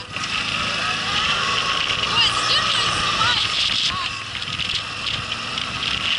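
Quad bike (ATV) engine running as it is ridden along a rough dirt track, with people's voices over it.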